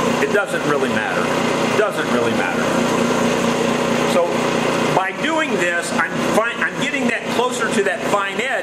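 JET bench grinder running while a steel lawn tractor mower blade is ground against its wheel to sharpen a badly worn, rounded edge: a steady motor hum under an even grinding hiss. A man's voice comes in over it about five seconds in.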